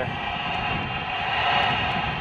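Steady rushing of strong wind over the camera microphone on open water, without clear strokes or knocks.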